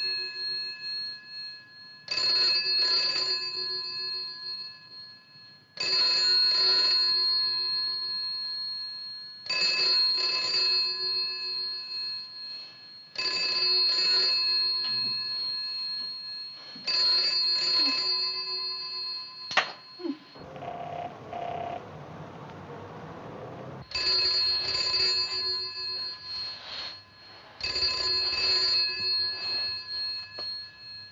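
Telephone bell ringing in repeated rings about every four seconds, going unanswered. The ringing breaks off for a few seconds about two-thirds through, with a click and a hiss, then starts again.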